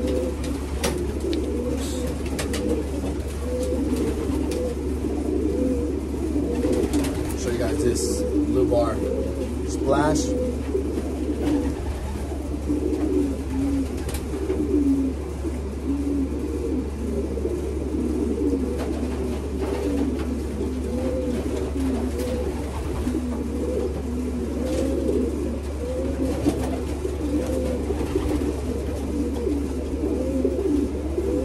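Many racing pigeons cooing without a break, their low coos overlapping one another, over a steady low hum, with a few sharp clicks about eight to ten seconds in.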